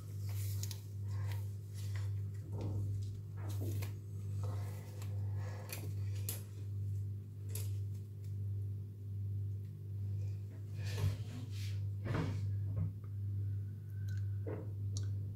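Soft clicks, rustles and wet pulling sounds of hands skinning a wild hare's carcass, the sharpest clicks about 11 and 12 seconds in, over a steady low hum that swells and fades about once a second.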